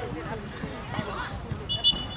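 A referee's whistle blown once near the end, a short shrill blast, stopping play for a foul that a spectator then disputes as a handball call. Distant shouting from players and spectators runs underneath.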